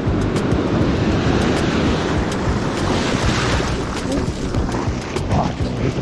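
Ocean surf breaking, and the foamy wash running up the sand, swelling about halfway through, with wind rumbling on the microphone.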